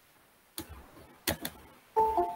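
Three sharp computer mouse clicks, one about half a second in and two in quick succession near the middle, with near silence between them.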